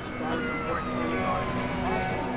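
Ambulance siren wailing, its pitch falling slowly over about a second and a half.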